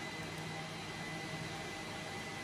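Steady whirring fan noise with a faint, constant high-pitched whine.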